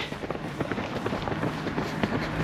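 Runners' footsteps: a quick, irregular run of light footfalls and scuffs.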